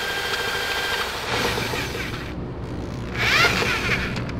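Cordless drill spinning the crankshaft of a 196cc Honda-clone single-cylinder engine by its flywheel nut, turning the freshly unseized engine over with its cylinder head off. A steady whir that shifts to a lower, heavier running sound about a second in.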